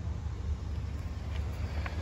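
Low, steady rumble of wind on the microphone, with a few faint clicks near the end.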